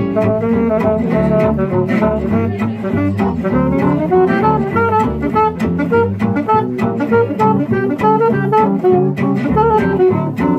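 Gypsy jazz quartet of two acoustic guitars, double bass and saxophone playing a swing tune: the guitars strum a steady beat over the double bass while the saxophone plays the melody line.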